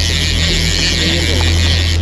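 A boat's twin outboard motors running with a steady low hum under wind and water noise.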